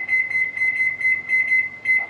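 High-pitched electronic beeping: one shrill tone pulsing rapidly, several beeps a second, that stops at the end.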